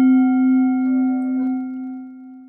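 A struck bell ringing out after a single strike: one strong low steady tone with fainter higher overtones, slowly fading.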